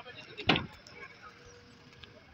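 A single short thump about half a second in: a plastic kayak hull knocking against the dock as it is pushed off into the water.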